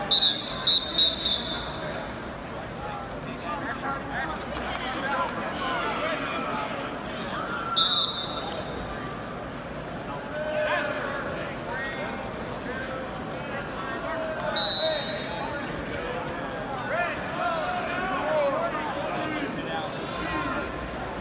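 Overlapping voices of coaches and spectators shouting in an arena during a wrestling bout. A few short, sharp high-pitched sounds cut through: a cluster at the start, one near eight seconds in and one near fifteen.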